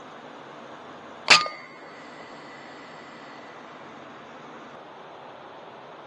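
A single shot from a .22 FX Impact M3 PCP air rifle about a second in, with a sharp metallic clang that rings on for over a second as the pellet strikes sheet metal on the shed.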